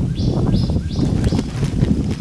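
Wind buffeting the microphone, a loud uneven low rumble, with a few short high sounds in the first second.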